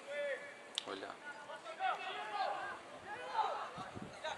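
Distant shouts and calls of players and spectators at an outdoor football match, scattered voices over open-air ambience, with a brief sharp click a little under a second in.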